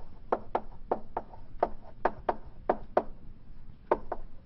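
Chalk knocking and tapping against a blackboard while writing: a string of sharp, uneven taps, about three a second.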